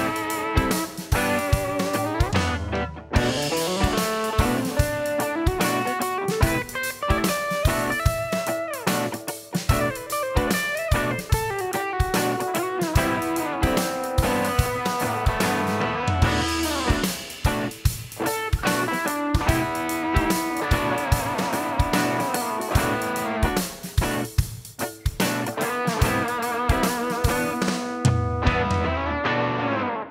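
Electric guitar played into a PreSonus Studio audio interface and heard as the processed signal: a continuous lead line of quick picked notes with several string bends.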